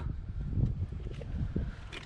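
Low wind rumble on the microphone, with a few faint handling ticks.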